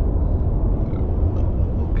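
Steady low rumble of a moving car heard from inside the cabin: road and engine noise.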